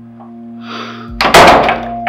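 Film soundtrack: a held, sustained music drone, with a short rising swish and then a loud, sudden low hit a little over a second in, a dramatic stinger.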